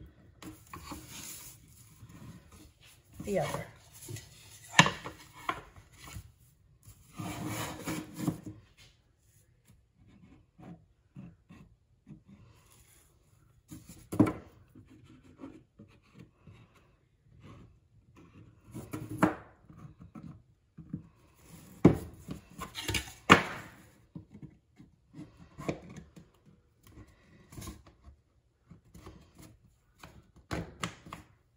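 Thin laser-cut maple plywood pieces being handled, slid and fitted together on a table: intermittent rubbing and scraping of wood on wood, with a few sharp wooden clacks.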